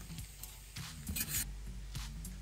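Chef's knife scraping and tapping on a wooden end-grain chopping board as finely diced green chilli is scooped up onto the blade, a few short scrapes clustered around the middle.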